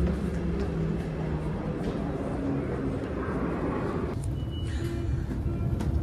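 Steady low rumble of a commuter train and station, with background music over it.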